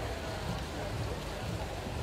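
Swimming-pool hall noise: a steady wash of crowd voices mixed with the splashing of swimmers racing freestyle.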